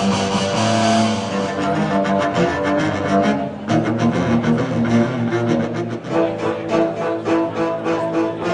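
Live double bass and cello duo playing, the double bass bowed. After a short drop a little past halfway, the playing turns into a pulsing rhythm of short notes.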